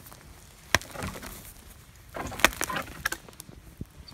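A small dead ash tree, rotten from ash dieback, being pushed over, its wood and roots cracking and snapping as they tear out of the soil. There is one sharp crack about three-quarters of a second in, then a quick run of cracks and snaps a little past the middle, the loudest of them about two and a half seconds in.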